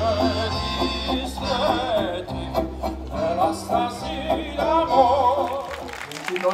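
Live acoustic folk band playing: acoustic guitar, accordion and bass guitar under a wavering, vibrato melody line, with the bass notes stopping as the piece ends near the close.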